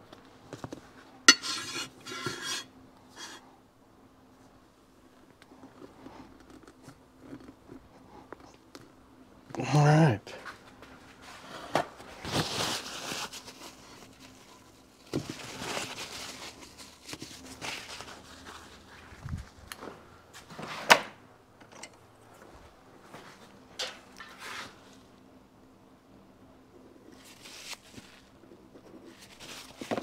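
Hands working on oil seals and an engine side cover on a workbench: scattered clinks and knocks of metal parts and tools, and a paper towel rustling as the cover is wiped. A short grunt or murmur about ten seconds in.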